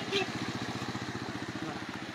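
Motorcycle engine running steadily as the bike passes close by and rides away through knee-deep floodwater.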